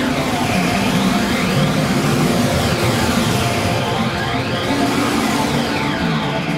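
Progressive thrash metal recording: a dense, loud band sound with held notes, swept by a whooshing effect that rises and falls in pitch about every three seconds.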